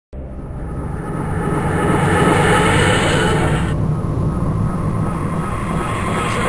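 A steady, dense low rumble that starts suddenly and swells over the first two seconds, with a high hiss above it that drops away a little past halfway.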